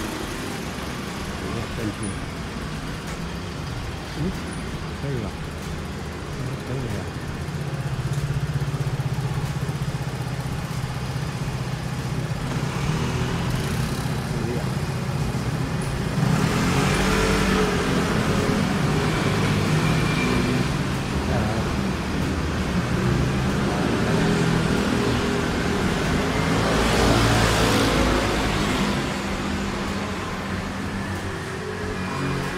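City street traffic: cars and motorcycles passing on a road, with a steady low engine hum through the middle and two louder stretches of traffic noise in the second half.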